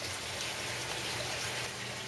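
Water running and trickling steadily through an aquaponics system, with a low steady hum underneath.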